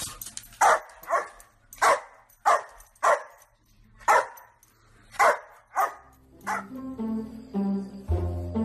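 A dog barking repeatedly at a parrot, about ten short sharp barks a half-second or so apart. Plucked-string music comes in near the end.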